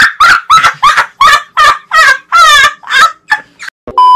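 Turkey gobbling used as a comedy sound effect: a quick string of about ten loud, short squawking calls, about three a second, one of them warbling near the middle.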